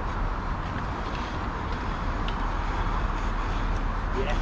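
Steady wind rumble on an outdoor microphone, a low, even roar with no distinct events.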